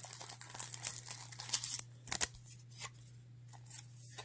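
Baseball cards being handled and slid into clear plastic soft sleeves: light crinkling of the thin plastic with many small clicks and taps, busiest in the first two seconds. A couple of sharp clicks come about two seconds in, and the handling is quieter after that.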